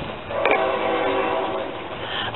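A horn sounding one steady held tone, starting about half a second in.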